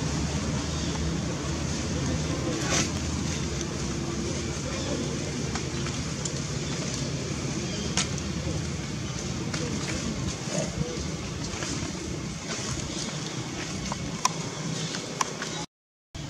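Outdoor background noise: indistinct voices and a steady low hum, like an engine running, that fades after the first several seconds, with a few sharp clicks scattered through.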